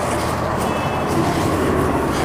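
A steady low rumble of background noise, with a brief faint high tone just under a second in.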